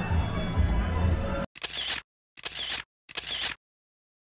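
Background music and crowd noise that cut off abruptly about a second and a half in, followed by three short camera-shutter sounds, each cut off into dead silence.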